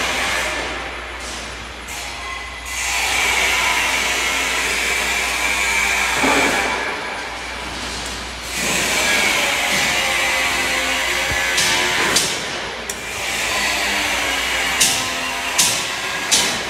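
Construction machinery running in a tunnel under construction, a steady mechanical whine that swells and eases twice, with a few sharp metallic knocks near the end.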